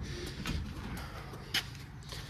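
A 1974 Mercury Comet drag car being pushed backward by hand, rolling slowly across a concrete shop floor with a low, even rumble and a few faint clicks.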